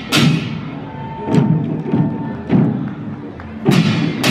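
Chinese waist drums beaten together by a marching troupe, four heavy unison beats a little over a second apart, each with a bright splashy top.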